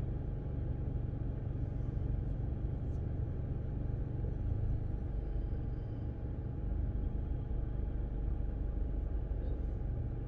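Parked car's engine idling with the air conditioning running, a steady low rumble heard from inside the cabin, with a faint steady whine over it.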